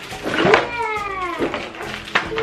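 A single high-pitched, meow-like vocal cry that rises briefly and then falls in a long glide, lasting about a second.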